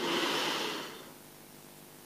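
A person's deep breath in through the nose and mouth, a soft hiss that fades out about a second in, taken at the end of a chant before the breath is held.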